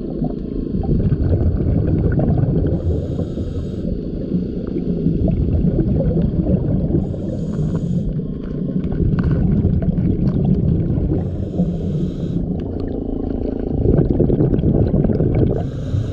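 A scuba diver breathing through a regulator, recorded underwater: a low rushing rumble throughout, broken by a short hiss of exhaled bubbles about every four seconds.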